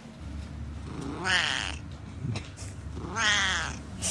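A Siamese cat meowing strangely: two drawn-out meows about two seconds apart.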